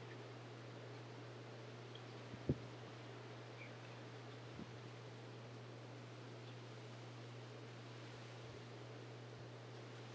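Quiet room tone with a steady low hum, and one soft thump about two and a half seconds in.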